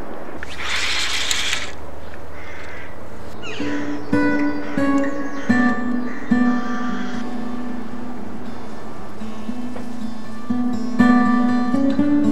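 Background acoustic guitar music: plucked notes begin about three and a half seconds in, after a short rush of noise at the start.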